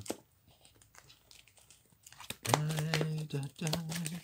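Playing cards being shuffled and handled, with soft crinkling and a few clicks, then about two and a half seconds in a man hums a low steady note, twice.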